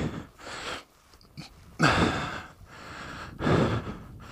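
A man breathing close to the microphone: three loud breaths about a second and a half apart, the middle one the loudest.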